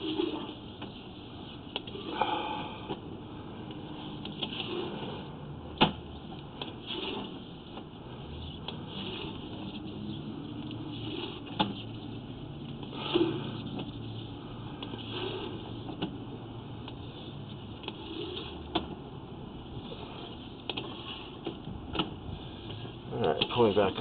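Sewer inspection camera's push cable being pulled back through the pipe, with scattered sharp clicks and knocks over a steady low noise.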